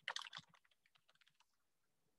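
Quick typing on a computer keyboard, a rapid run of keystrokes lasting about half a second, then near silence.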